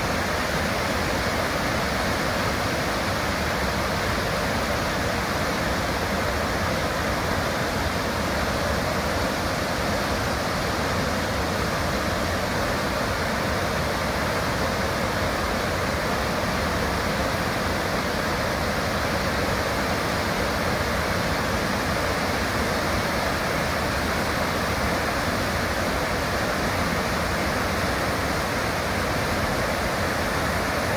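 Benham Falls on the Deschutes River, heard from its base: whitewater rushing in a loud, steady, unbroken wash that never changes in level.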